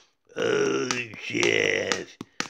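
A man's voice singing two drawn-out wordless vowel sounds, the first falling in pitch and the second held, with a couple of sharp clicks among them.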